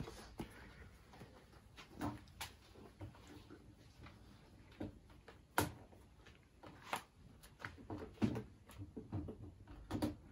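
Scattered faint clicks and knocks of hand work on a router table, as the cutter height of the router mounted beneath it is adjusted; the router is not running.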